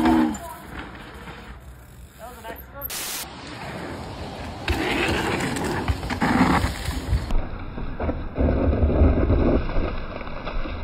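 Mountain-bike tyres rolling over dirt trails and jumps, with indistinct voices. The sound changes abruptly about three and seven seconds in.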